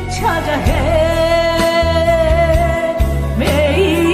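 A woman singing a Korean trot song live into a microphone over a backing track with bass and drums. She holds one long note for about two and a half seconds, then starts the next line near the end.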